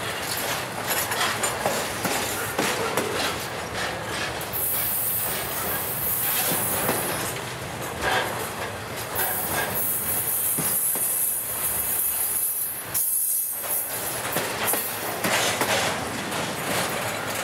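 Intermodal freight train cars rolling past at speed, with steel wheels clattering over the rails in steady clicks. A high-pitched wheel squeal rises over the clatter from about four seconds in until about thirteen seconds.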